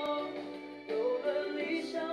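A song playing: a sung melody over instrumental accompaniment, the voice pausing briefly just under a second in before the next phrase begins.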